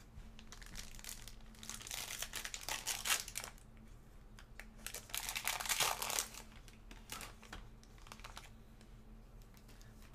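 A foil trading-card pack wrapper being torn open and crinkled by hand, in two crackling bursts: one about two seconds in and one about five seconds in.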